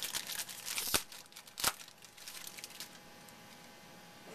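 A trading-card pack wrapper being torn open and crinkled in the hands, a dense crackle with two sharper snaps about one and one-and-a-half seconds in, dying away before three seconds.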